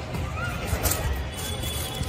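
Wind rumbling on the phone's microphone, with faint music in the background.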